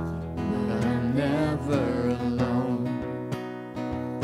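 A worship song played live: a strummed acoustic guitar accompanies a singing voice, and the sung line rises and falls through the middle of the passage.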